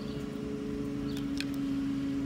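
A steady, even machine hum with a few fixed tones, and one faint click about one and a half seconds in.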